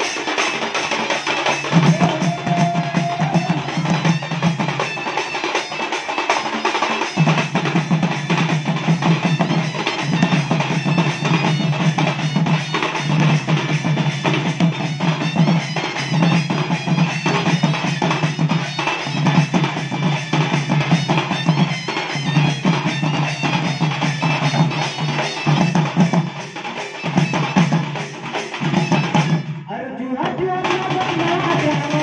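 Live folk drum ensemble: several large two-headed barrel drums (dhol) beaten with stick and hand in a fast, steady rhythm, with a brief break just before the end.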